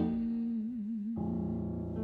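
A woman singer holds a long closing note that widens into vibrato, accompanied by a grand piano. Just past a second in, the voice ends and the piano sounds a fresh chord that rings on.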